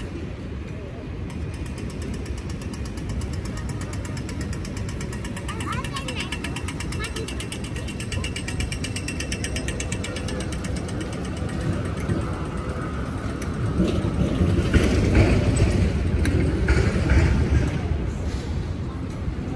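Street ambience at a signalled pedestrian crossing: the crossing's audio signal ticks rapidly for the walk phase, over passers-by talking and traffic. Near the end a louder rumble of passing vehicles rises and fades.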